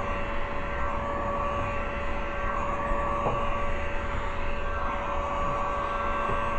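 Heat gun running steadily, a fan hum with a steady whine, as it is moved over window tint film to heat out an air bubble.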